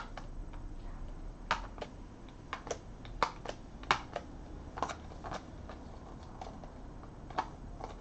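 Small plastic desktop trash can being handled: light, irregular clicks and taps of plastic pieces, about ten of them spread over several seconds.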